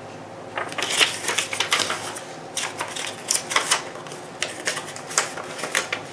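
Paper rustling and crackling as a folded instruction leaflet is opened out and handled, with a string of irregular short crinkles.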